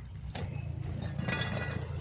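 Canal narrowboat's diesel engine running steadily as the boat passes close by, a low even hum.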